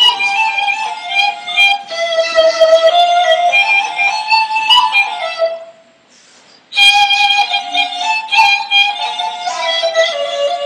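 Persian ney (end-blown reed flute) playing a slow melody in the Chahargah mode, stepping and sliding between sustained notes. It breaks off for about a second a little past the middle, then resumes.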